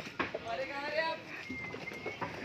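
People talking in the background, with no clear words. A brief thin whistle-like tone comes near the end.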